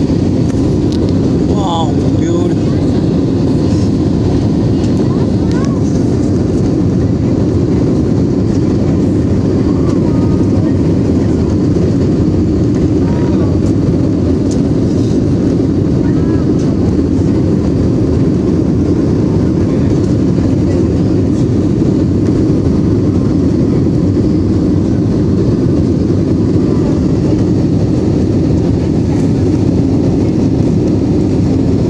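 Steady loud cabin noise of an Airbus A320-family jet airliner in flight: an even, deep rush of jet engines and airflow with a constant low hum, unchanging throughout.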